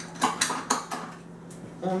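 Metal cutlery clinking as someone rummages through utensils for a knife: a run of sharp clinks, most of them in the first second, with one more about a second and a half in.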